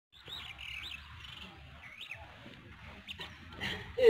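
Birds chirping: a few short calls that rise and fall in pitch, over a low outdoor rumble.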